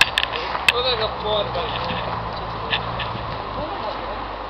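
Men's voices talking in the background, with a few sharp clicks over a steady low hum of outdoor background noise.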